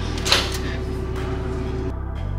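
Background music of sustained low chords. About a third of a second in comes a single short, sharp clack of a microwave oven door being opened.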